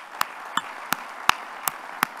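Audience applauding, with one person's hand claps ringing out sharply close to the microphone at an even pace of nearly three a second.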